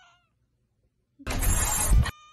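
A domestic cat's loud, harsh meow lasting just under a second, starting a little past halfway through.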